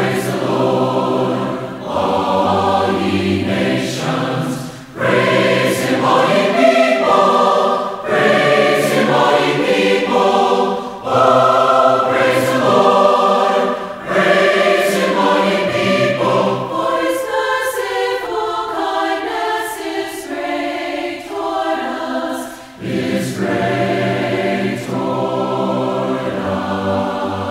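A choir singing a hymn, phrase after phrase with brief breaks between.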